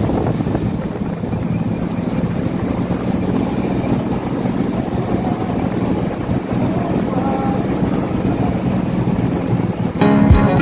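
Jeepney engine running with a steady drone as it drives, heard from the roof with wind and road rumble.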